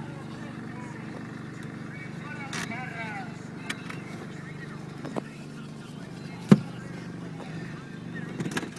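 Car engine idling, a steady low hum heard from inside the cabin. A brief wavering vocal sound comes about two and a half seconds in, and a single sharp click, the loudest sound, about six and a half seconds in.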